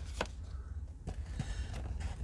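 Faint handling of a carded action figure: a few light clicks and taps from the cardboard backing card and plastic blister as it is turned over, over a steady low hum.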